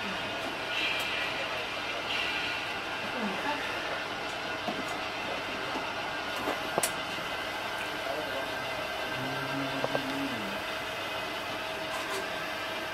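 Sound-equipped On30 model steam locomotives standing on the layout, giving a steady hiss with a faint steady hum, with a couple of sharp clicks a little past the middle.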